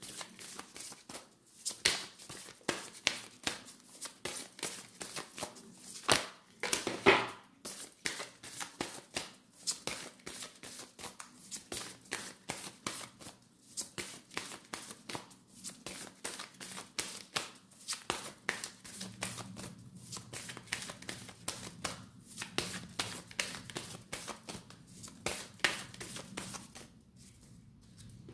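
A deck of oracle cards being shuffled by hand: a continuous run of short card flicks and slaps, about two to three a second, with a louder flurry about a quarter of the way in.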